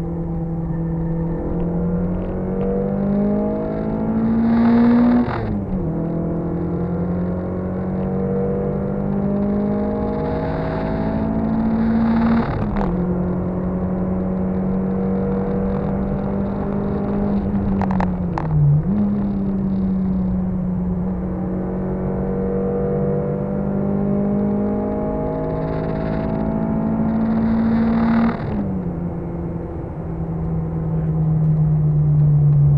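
Car engine heard from inside the cabin under hard acceleration on a race track. Its pitch climbs slowly and then drops sharply at each gear change, about four times.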